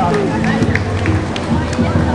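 Live jazz band playing outdoors, with steady held low notes, under the chatter of a passing crowd.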